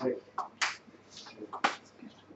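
A few short, sharp clicks and scuffs, about half a second apart, with a brief low voice sound at the start.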